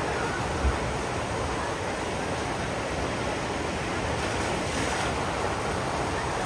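Water gushing steadily out of water-slide exit flumes into a splash pool, an even rushing sound, with one brief low thump under a second in.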